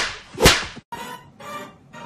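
Two sharp, loud smacks about half a second apart, part of a steady run of such hits. About a second in they cut off abruptly, giving way to quieter music.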